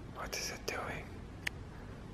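A person's short breathy whisper lasting under a second, followed by a single sharp click.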